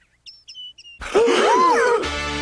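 Cartoon sound effect of a few short, high bird-like tweets, typical of the dizzy after-crash gag. About a second in, a louder cry takes over, its pitch swooping up and then down.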